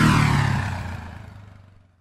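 Logo sting sound effect: a sweeping pass-by, loudest at the start, falling in pitch and fading away to silence by the end.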